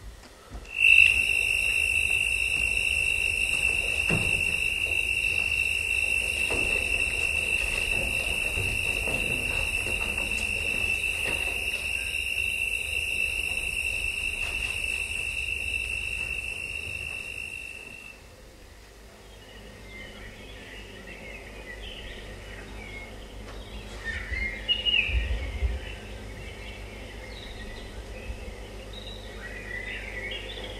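Forest sound effects played through a theatre's speakers during a stage scene change. A loud, steady, high-pitched tone comes in suddenly about a second in and cuts off about two-thirds of the way through. Softer scattered bird chirps follow it.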